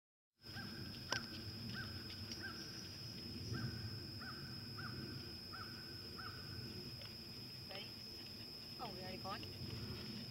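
A bird calling over and over, about ten short, evenly spaced calls, roughly one and a half a second, against a faint outdoor background. Near the end a woman's voice says "one".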